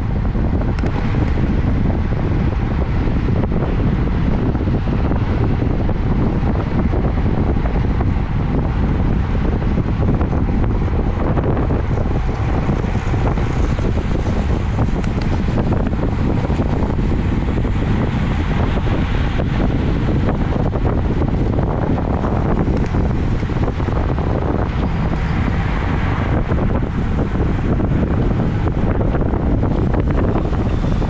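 Steady, loud wind buffeting an action camera's microphone on a road bike ridden at about 30 mph in a racing pack.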